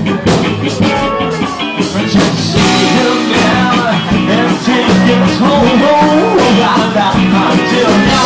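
Live band playing a song, with a voice singing over amplified instruments and a steady beat.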